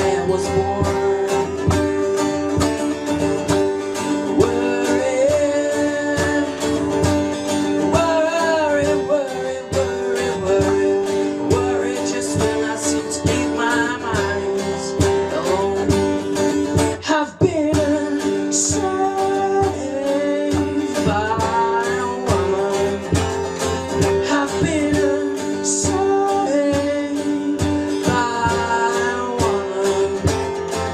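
A man singing while strumming an acoustic guitar, performed live into a microphone. The playing breaks off for a moment a little past halfway, then carries on.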